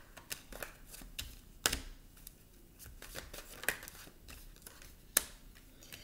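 Tarot cards being drawn and laid down on a wooden table: scattered soft clicks and slaps of card on card and card on wood, with sharper snaps about a second and a half in, near the middle and near the end.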